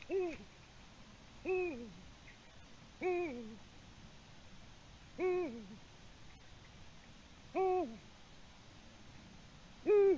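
Eurasian eagle-owl hooting repeatedly: about five deep hoots, each ending in a slight downward slide, spaced one and a half to two and a half seconds apart.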